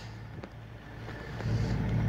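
Boat engine running with a low, steady hum, mixed with wind rumbling on the microphone. The rumble grows louder in the second half.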